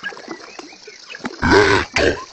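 Electronically warped, animal-like vocal calls: a run of short chirps, then one louder call with a falling pitch about one and a half seconds in.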